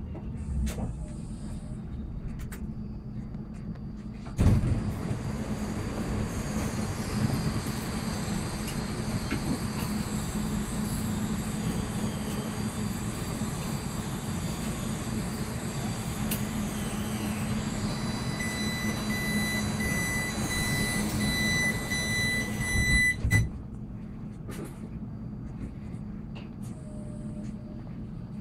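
Electric commuter train standing at a stop with a low steady hum: a few seconds in, the sliding doors open with a thump and a louder noise with steady high whines comes in. Near the end a repeating warning beep sounds, and the doors shut with a thud that cuts the noise off.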